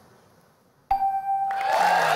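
Game-show answer-board reveal chime: a single electronic ding about a second in, as the survey score for the answer comes up. Audience applause breaks in half a second later over its tail.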